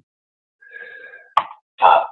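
A short sharp click about one and a half seconds in, then the NVDA screen reader's synthetic voice beginning an announcement near the end. A faint brief sound comes before the click.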